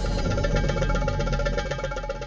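Background music: a fast, evenly repeating pulse over held tones.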